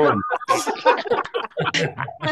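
Several people laughing and talking over one another, heard through video-call audio.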